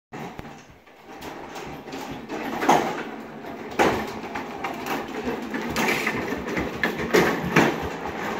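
Hard plastic wheels of a Little Tikes Cozy Coupe ride-on toy car rolling and rumbling across a hard floor, with a few sharp knocks as it bumps along.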